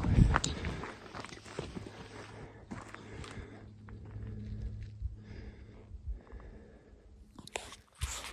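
Rustling and clicking handling noises, loudest in the first second, then fainter and scattered over a steady low hum that stops shortly before the end.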